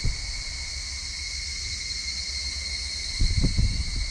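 Steady chorus of insects in the grass, a continuous high buzz held on two steady pitches. Under it a low rumble, and a brief dull noise about three seconds in.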